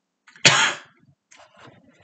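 A man gives one short, sharp cough to clear his throat about half a second in, followed by a few much fainter sounds.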